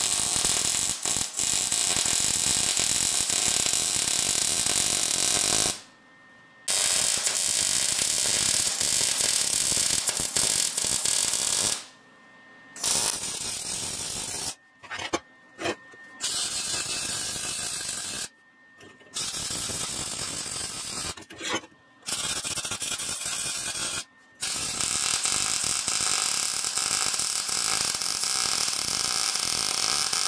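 MIG welder arc crackling steadily as steel angle iron is welded, in runs of a few seconds that stop and restart about seven times, a few runs quieter than the rest.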